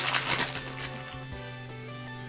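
Foil booster-pack wrapper crinkling as it is pulled open, for about the first half second. Background music with steady held notes runs throughout.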